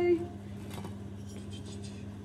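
A steady low hum with a few faint taps and rustles of small handling, about a second in and again towards the end.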